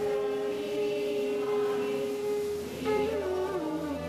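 Hindu devotional aarti music: a single note held steady for nearly three seconds, then the melody starts to move about three seconds in.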